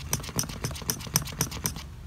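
Quick, irregular clicking and tapping, about six clicks a second, of a small metal paint can being stirred as a powdered tree paint is mixed with water and oils into a paste. The clicking stops near the end.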